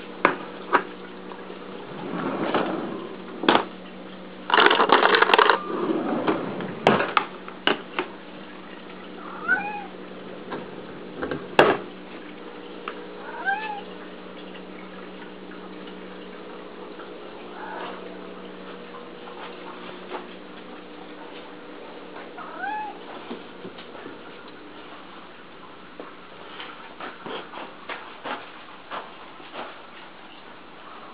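Domestic cats meowing for food: a few short calls that rise and fall, some seconds apart. Early on they come among rustling and clattering at a drawer of cat food, with a short loud rustle about five seconds in, and a steady low hum runs underneath.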